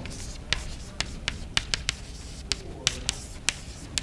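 Chalk writing on a blackboard: a run of sharp, irregular chalk taps and short scrapes, about a dozen in four seconds, as letters are formed.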